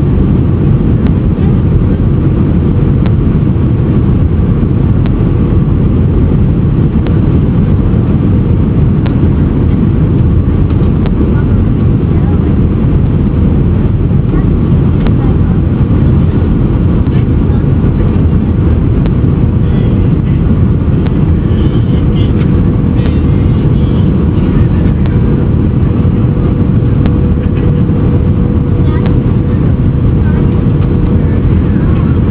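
Airliner cabin noise on approach: the loud, steady rumble of jet engines and rushing air, with a thin steady hum running through it.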